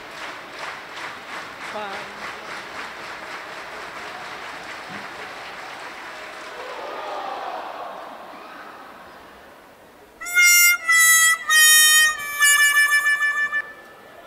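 Arena crowd noise with a fast, even rhythm of claps that fades away over several seconds, followed near the end by a short jingle of loud, held, reedy-sounding notes that step up and down in pitch.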